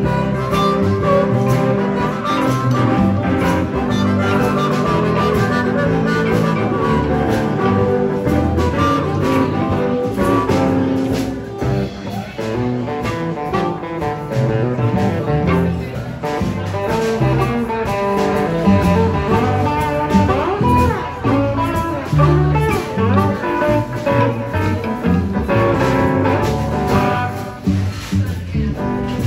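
Live blues band playing an instrumental break: a harmonica solo cupped into a vocal microphone over hollow-body electric guitar, upright double bass and a drum kit. The harmonica bends some notes about two-thirds of the way through.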